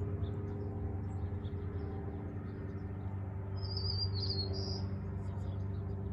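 A small bird's short chirping trill about three and a half seconds in, over a steady low hum.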